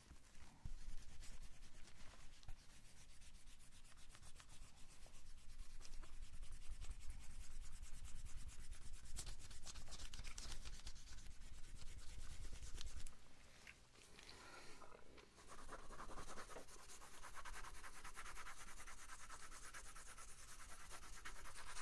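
Pencil writing on a paper pad: continuous scratchy strokes, with a short break about two-thirds of the way through before the scratching starts again.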